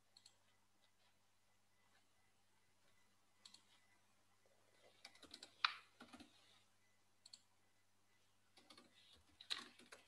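Faint computer keyboard typing: scattered short runs of key clicks, the loudest just before the middle and again near the end, over a low steady electrical hum.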